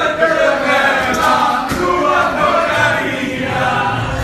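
A roomful of diners singing together in chorus, many voices at once, loud and steady.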